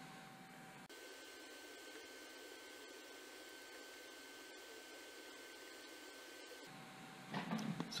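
Near silence: faint steady room hiss with a thin steady tone, and no distinct sound from the handling.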